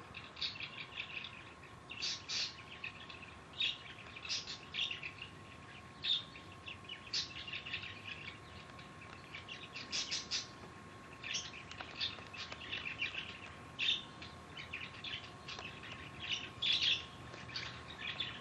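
Small birds chirping, short high calls coming every second or so, over a faint steady high tone.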